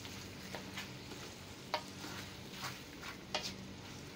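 Wooden spatula stirring chicken pieces, shallots and garlic in a stainless steel wok, with about five short scrapes and knocks against the pan over a faint, steady sizzle.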